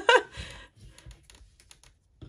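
A run of light, irregular clicks and taps from hands handling a plastic squeeze bottle of glue and the fabric-covered book cover on a tabletop, starting about half a second in.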